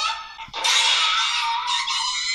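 A girl's high-pitched scream in the anime's soundtrack. It starts about half a second in and is held for about two seconds.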